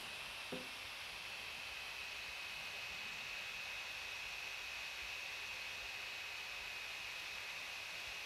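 Gigabyte Aero 15X v8 laptop's cooling fans running at full speed: a steady, quiet hiss of air with a thin high whine. A faint short knock comes about half a second in.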